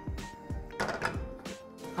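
Soft background music with held notes, with two short scrapes of a spoon against a metal bowl, about a quarter second and a second in, as food is spooned out into a pan.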